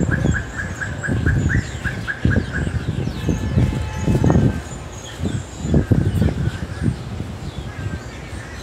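A bird calling a quick run of about a dozen even chirps, about four a second, that stops about two and a half seconds in, with fainter, higher bird chirps here and there. Irregular gusts of low rumbling wind on the microphone are louder than the birds.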